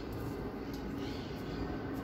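Steady open-air background noise, an even hiss and low rumble with no distinct events.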